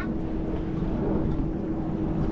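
A boat's motor running steadily, with wind and water noise and a faint steady hum tone.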